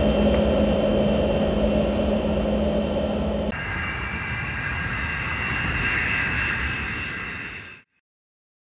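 Jet aircraft engine noise: a steady drone with a low hum that cuts off suddenly about three and a half seconds in and is replaced by a different jet sound with a high turbofan whine, which fades out just before the end.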